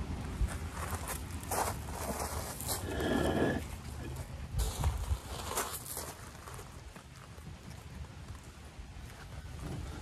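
Footsteps crunching on pea gravel, with several knocks and scrapes of concrete wall blocks being picked up and handled, mostly in the first half.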